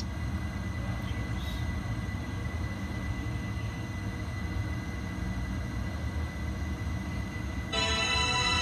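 Steady low background rumble with a faint thin high tone running through it. Near the end a sustained, chord-like electronic tone starts and holds.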